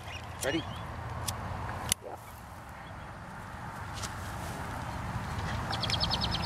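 Butane utility lighters clicking a few sharp times as they are held to the edges of a newspaper kite, over a low background noise that slowly grows louder.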